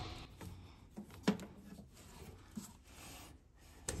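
Faint rubbing and scraping of a rubber vacuum hose being worked off the vacuum advance on a car distributor.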